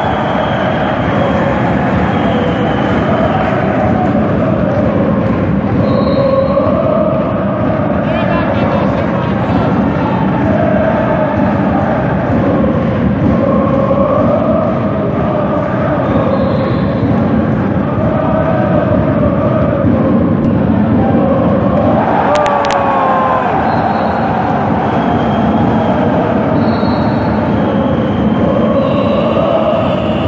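Large crowd of fans in an indoor handball hall chanting and singing loudly and continuously. About 22 seconds in there is a sharp crack with a brief falling tone.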